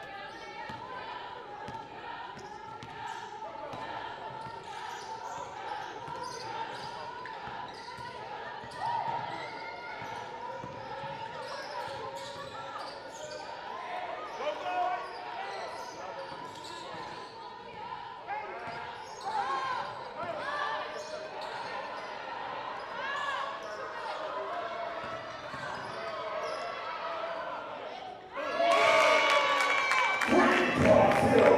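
A basketball bouncing on a hardwood gym floor, dribbled and knocking again and again, over steady voices in a large echoing hall. It gets louder near the end.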